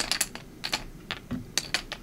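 A quick series of light, sharp clicks, about seven in two seconds, as small word tiles are picked through and knocked against each other.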